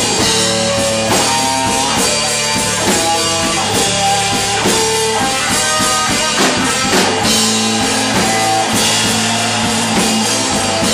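Live blues-rock band playing an instrumental passage: electric guitar playing single-note lead lines, a run of short and held notes, over a drum kit with steady cymbals.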